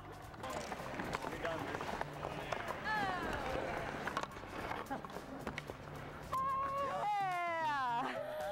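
Players shouting and whooping in celebration on an ice rink, two long calls sliding down in pitch, the second held before it falls near the end. Background music plays under them, and there is scattered clattering on the ice.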